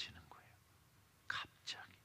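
A man's voice: the end of a spoken phrase trails off, then two short, breathy, whispered sounds come about a second and a half in.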